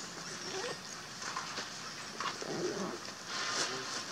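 Monkeys of a troop giving a few short, soft whimpering calls, over a steady high hiss of background noise.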